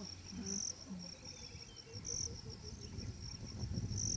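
Crickets chirring in a steady high-pitched band that swells louder about every second and a half, over a low background rumble.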